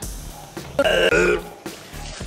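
A man retching loudly: one rough, guttural heave of about half a second, a little under a second in.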